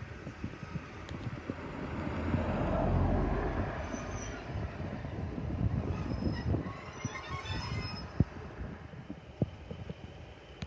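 Class 150 Sprinter diesel multiple unit running in to stop, its diesel engine and wheels rumbling, loudest about three seconds in. From about four seconds a high squeal of the brakes sets in as it slows, fading after about eight seconds.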